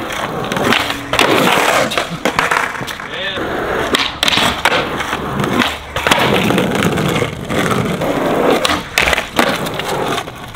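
Skateboard rolling on concrete ledges and ground, with repeated sharp clacks from tail pops and board landings.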